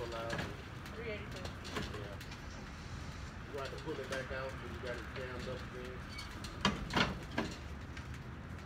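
Faint, indistinct talking in the background over a steady low noise, with three sharp knocks in quick succession near the end.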